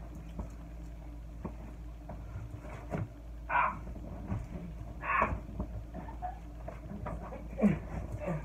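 A comforter and sheets being handled on a bed: rustling fabric with scattered soft knocks, and two short, louder bursts of noise about three and a half and five seconds in.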